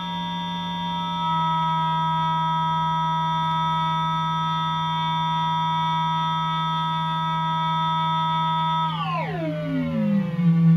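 Ring-modulated synthesizer tone from a Barton Musical Circuits four-quadrant multiplier module: a steady low tone with several higher tones held above it, stepping up in level about a second in. About nine seconds in, the upper tones glide sharply downward as an oscillator's frequency is turned down.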